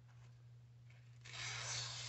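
Sixleaf SL-12's D2 steel blade slicing through a sheet of lined legal-pad paper, a short rasping hiss starting a little past the middle. The edge cuts the paper cleanly, the sign of a sharp blade.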